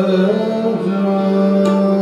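Hindustani classical vocal with harmonium accompaniment: the voice and harmonium move through a short melodic phrase, then settle on a long held note about a second in. A single sharp stroke, likely from the tabla, sounds near the end.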